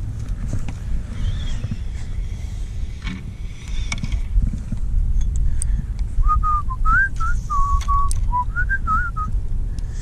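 A person whistling a short tune, a string of wavering notes starting about six seconds in and lasting about three seconds, over low wind rumble on the microphone.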